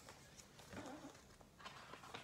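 Faint handling noise of a hardcover picture book being moved and turned over: soft rustles and taps, with a brief faint vocal sound about a second in.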